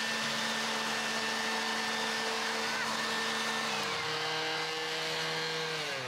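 Two handheld electric leaf blowers running together at full speed, a steady whine over a rush of air. One cuts out about four seconds in, and the other winds down just before the end.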